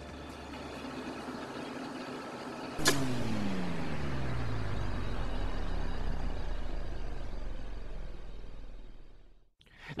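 Industrial machinery humming, then a sharp clunk about three seconds in as a disconnect switch is pulled, followed by the electric motor winding down in a long falling pitch as it loses power, fading out near the end.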